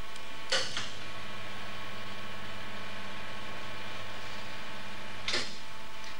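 X-ray fluoroscopy unit humming steadily while it is switched on to screen a barium swallow. A short hissing click comes as it starts and another as it cuts off.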